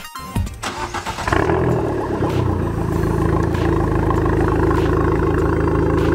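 An Abarth 500's turbocharged 1.4-litre four-cylinder heard at its exhaust, starting up and settling into a steady idle about a second in. A moment of music is heard at the very start.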